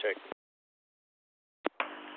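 A radio scanner on military UHF air-band traffic: the last word of a radio check, "check," cuts off abruptly, and the receiver goes dead silent. Near the end two short clicks open onto a steady static hiss with a faint hum as the next transmission comes in.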